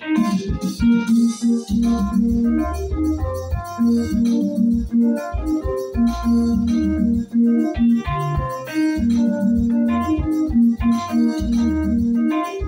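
A Yamaha arranger keyboard playing a lingala tune: a bright keyboard melody over a steady bass line and drum rhythm.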